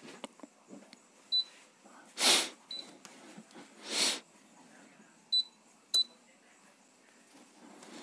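Hot-air rework station being set to 100 degrees: four short button clicks, each with a brief high beep, and two short hissing bursts in between.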